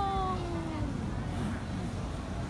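A woman's voice drawing out an excited exclamation on one long falling note for about the first second, then the low hum of a busy outdoor crowd.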